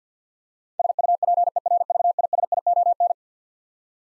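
Morse code at 50 words per minute: a single steady tone of about 700 Hz keyed rapidly on and off in dots and dashes for about two seconds, starting about a second in. It sends the word SUPERVISION before the word is spoken.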